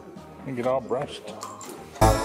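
A person's short wordless vocal sound, rising and falling in pitch, about half a second in, with a fainter one near the end.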